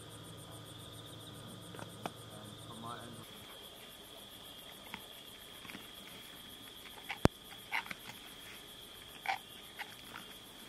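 Crickets trilling steadily, with a low hum that stops about three seconds in. After that come scattered short crunches and clicks from a spotted hyena chewing at a carcass, the loudest a sharp crack about seven seconds in.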